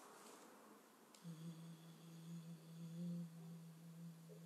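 A faint click about a second in, then a low steady droning tone that holds on, with a fainter high ringing over it that fades after a couple of seconds.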